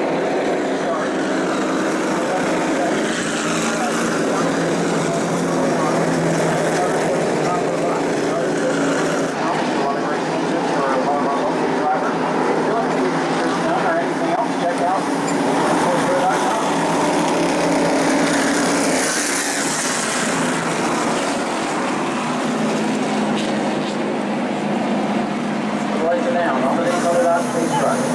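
Pro Late Model stock car's V8 running at low speed, a steady engine drone, with indistinct voices mixed in.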